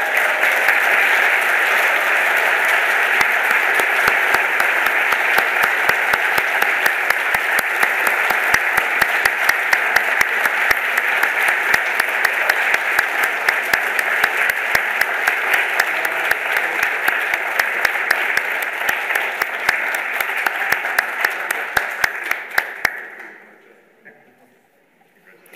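Audience applauding, a dense sustained clapping with a few sharper individual claps standing out, dying away in the last second or two.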